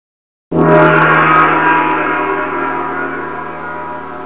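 A gong struck once about half a second in, ringing with many steady tones and slowly dying away.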